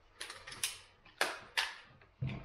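A small black hand-held device with a cable being handled, making four sharp mechanical clicks spaced about half a second apart.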